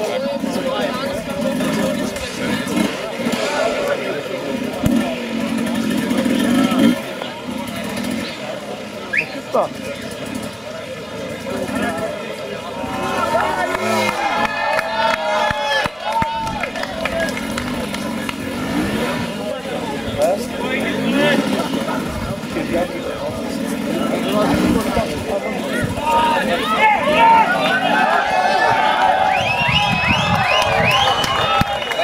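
Enduro motorcycle engine revving in bursts on a steep climb, under spectators' chatter and shouting. The crowd noise grows louder over the last few seconds.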